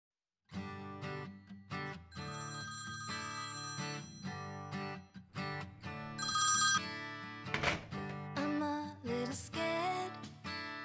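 Opening of an indie pop song with a telephone ringing over the music, the ring loudest in a short burst about six seconds in.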